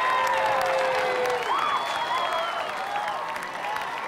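Crowd of spectators clapping and cheering, with overlapping shouts and calls; it gradually dies down.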